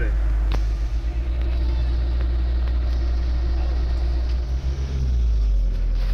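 Steady low rumble of a Ford Transit motorhome driving on a wet road, heard from inside the cab: engine and road noise with a light tyre hiss.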